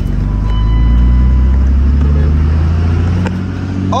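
Pickup truck's engine running, heard from inside the cab, its pitch rising slightly around the middle and then holding steady.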